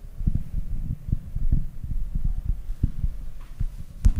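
Irregular low thumps over a low rumble, several a second and uneven.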